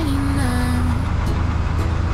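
Steady low rumble of a car moving slowly in city street traffic, under background music with a held melody note that steps down and fades about a second in.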